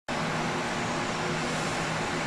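Steady outdoor traffic noise: an even rush with a low engine hum under it.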